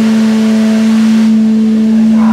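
An amplified electric string instrument in a live rock band holds one long note at a steady pitch, with no drums playing.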